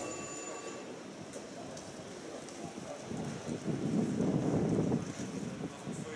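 Open-air stadium ambience with wind on the microphone, swelling into a louder gust from about three and a half to five seconds in.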